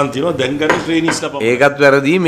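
A man speaking, with a few light clinks among the words.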